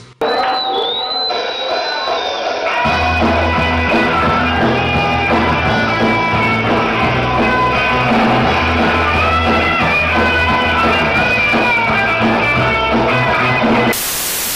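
Rock band playing live on electric guitars, bass and drums, loud and steady. It starts abruptly with guitars alone, and the bass and low end come in about three seconds in.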